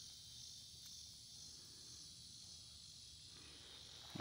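Near silence: a faint, steady, high-pitched background hiss with no distinct sounds.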